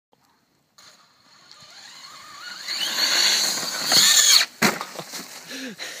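Brushless electric RC monster truck's motor whining, rising in pitch and growing louder as it speeds closer. The whine cuts off at a sharp thump about four and a half seconds in as the truck hits, followed by a few smaller knocks and clatters.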